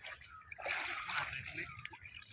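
Shallow water splashing and sloshing as a fishing net is hauled through it by hand, irregular and noisy, starting about half a second in.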